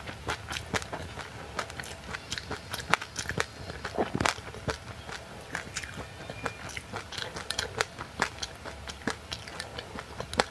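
Close-miked crunchy chewing of a mouthful of sesame seeds and frozen passionfruit: a fast, irregular run of crisp crackles, with a few louder crunches in the middle.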